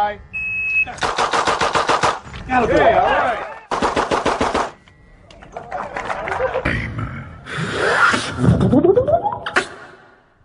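A shot timer beeps, then a revolver fires a very rapid string of shots lasting just over a second; after a short pause for a reload, a second rapid string follows.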